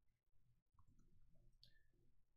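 Near silence with a few faint clicks from working a computer keyboard and mouse.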